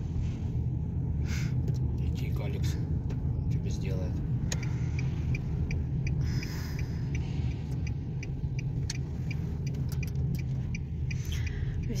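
Car cabin noise: the engine and tyres give a steady low rumble while the car drives along. Through the middle, a turn-signal indicator ticks evenly, about two ticks a second, as the car gets ready to turn.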